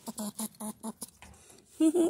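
A squirrel making a rapid run of short, soft calls, about eight a second, that stops shortly before a voice near the end.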